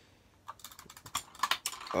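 Plastic Lego bricks clicking and rattling as they are handled and pressed into place on a model, a quick run of small sharp clicks starting about half a second in.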